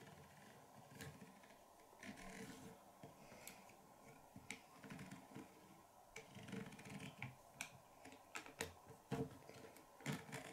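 Faint, scattered clicks and soft handling noise of a small plastic Lego model being turned and its barrels tilted by hand.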